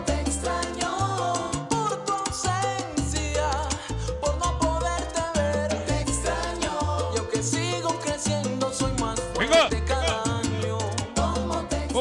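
Recorded salsa music played loud over a sound system, with a bouncing bass line and a steady beat.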